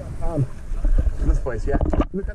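Shallow river water splashing and sloshing right against a waterproof action camera as a swimmer crawls past it, with a heavy low rumble from water on the housing, mixed with short bits of voices.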